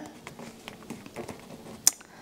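Quiet handling sounds of fingers pressing and smoothing a diamond painting canvas along a magnetic frame bar: faint rustling and small ticks, with one sharp click a little before the end.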